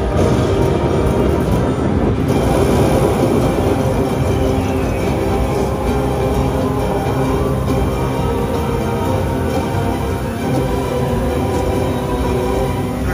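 Zeus Power Link slot machine playing loud, dramatic bonus-feature music while a column of prize values scrolls during its jackpot feature.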